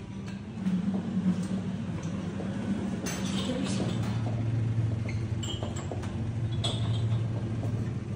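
Breakfast-room background: a steady low hum with a few scattered clinks of dishes and glass.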